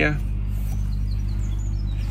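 Steady low background hum, with a few faint, short bird chirps above it.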